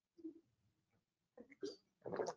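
A man drinking from a bottle: a few faint gulps, one about a quarter second in and a small cluster about one and a half seconds in, in otherwise near silence.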